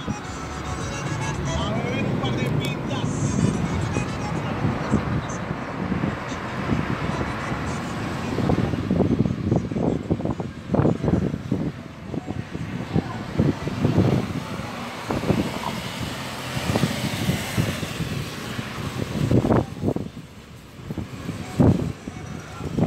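Road and engine noise inside a moving Kia car's cabin, with a voice and music over it from about the middle on.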